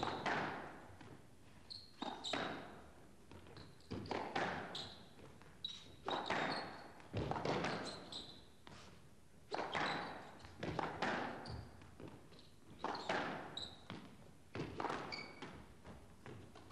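Squash rally in a reverberant glass-walled court: the ball struck by rackets and hitting the walls about once a second, each hit ringing briefly in the hall. Short high squeaks in between come from shoes on the court floor.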